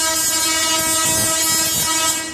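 A large Tesla coil firing, with electrical arcs streaming from its toroid. It makes a loud, steady buzz over a hiss and cuts off right at the end.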